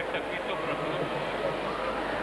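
Indistinct crowd voices in an indoor arena, a steady murmur with no clear words.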